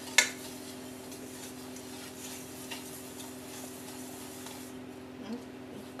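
A wooden spoon stirring a thick peanut butter mixture in a stainless steel saucepan: a sharp knock of spoon against pan just after the start, then soft scraping and light ticks. A steady low hum runs underneath.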